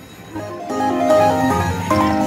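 Aristocrat Dragon's Riches slot machine playing its electronic win music as a line win is paid: a melody of held, plucked keyboard-like notes stepping in pitch, starting about half a second in.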